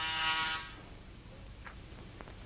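Electric door buzzer sounding one steady buzz that cuts off sharply about half a second in.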